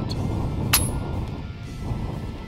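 Background music, with a single sharp crack less than a second in: a .30 calibre FX Impact PCP air rifle firing a shot.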